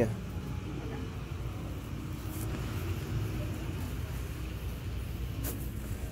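Wire shopping cart rolling over a hard store floor: a steady low rumble, with a couple of faint rattles.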